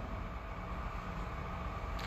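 Steady low background noise with a faint hum and hiss: room tone in a pause between words.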